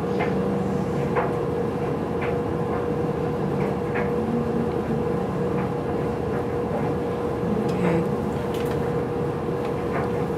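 A steady mechanical hum with a constant mid-pitched tone running through it, and a few faint ticks scattered across it.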